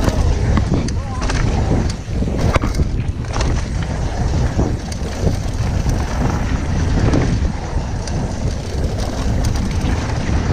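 Wind buffeting an action camera's microphone over the rumble of a Giant Reign 1 full-suspension mountain bike's tyres rolling fast on a dirt and gravel trail. Sharp rattles and knocks from the bike over rough ground are scattered through it, with a cluster about two and a half seconds in.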